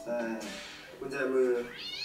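Thai dialogue from the series playing, spoken in short bursts with rising, arching pitch that comes across as meow-like, cat-like calls.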